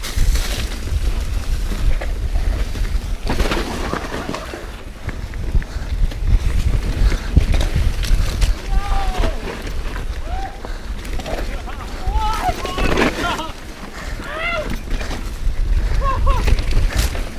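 Wind buffeting the camera microphone over the rumble of mountain-bike tyres on a dirt trail at downhill speed, with sharp knocks and rattles as the bike hits bumps.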